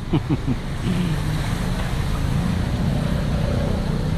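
Vehicle engines running in slow traffic on a flooded street, with a steady rush of water spray under the wheels and wind on the microphone.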